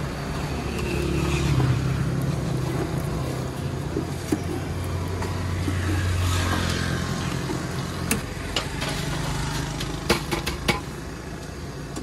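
Passing road vehicles, motorcycles among them, with a low engine hum that swells and fades over several seconds. Several sharp knocks come in the last few seconds.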